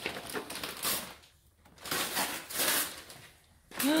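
Cardboard toy box and its plastic packaging being handled, rustling and scraping in two short bursts with a pause between.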